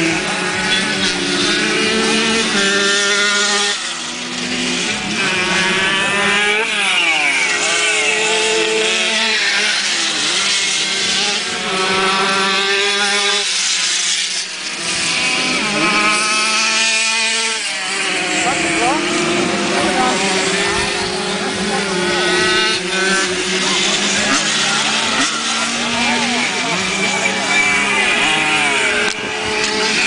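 Several grass-track racing motorcycles running hard around the course. Their engine notes climb and drop again every couple of seconds as the riders accelerate down the straights and ease off for the bends, with more than one engine at different pitches at once.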